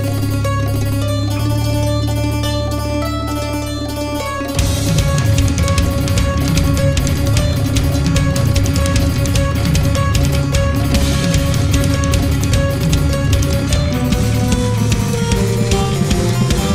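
Harpsichord voice on a Casio digital keyboard playing a fast metal riff, the notes plucked and quick over held low bass notes. About four and a half seconds in, the music gets louder and denser, with a rapid driving run of notes.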